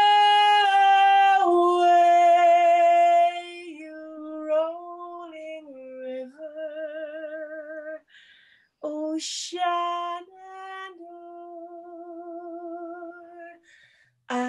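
A woman singing unaccompanied. She opens with a long, loud held note, then moves into softer held notes with vibrato, with a short break for breath a little past halfway.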